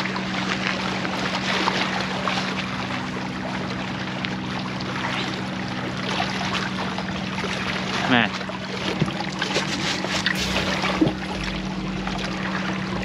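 Choppy water lapping and splashing against granite jetty rocks as a hooked bull red (red drum) thrashes at the surface beside them, over a steady low hum.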